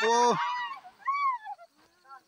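A person's loud, drawn-out voice that fades out half a second in, followed about a second in by a short, high call that rises and falls.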